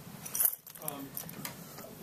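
A brief rattling noise about half a second in, then faint speech.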